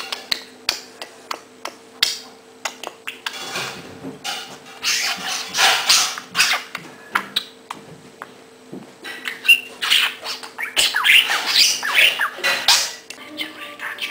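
A budgerigar chattering and squawking in bursts, mostly in the middle and the last few seconds, mixed with many sharp clicks and taps as it pecks at and pushes a small plastic stapler across a wooden floor.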